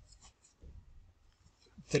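A few faint taps and light scratching of a stylus on a writing surface, then a man's voice begins near the end.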